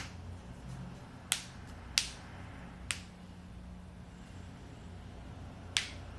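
Several short, sharp clicks at uneven intervals, the loudest about two seconds in, over a steady low hum.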